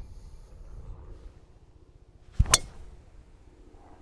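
Golf driver striking the ball: a short low thud, then at once a single sharp crack of impact about two and a half seconds in. It is a low drive, swept off the turf with the sole of the club.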